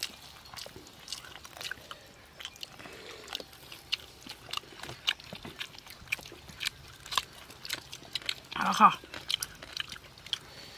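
A person biting and chewing a piece of cooked quail close to the microphone: irregular wet mouth clicks and smacks. Near the end comes a short appreciative 'aha'.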